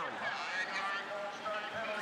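Speech: a man's voice.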